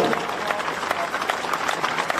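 Crowd applauding, a dense patter of many hand claps.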